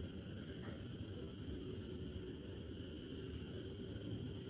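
Faint steady background noise, a low rumble with a thin high hiss, with no distinct event in it.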